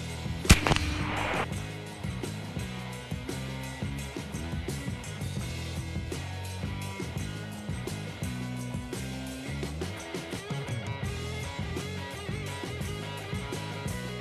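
A single shot from an AEA Zeus .72-caliber big-bore PCP air rifle about half a second in, a sharp crack with a brief ringing tail. Background music plays through the rest.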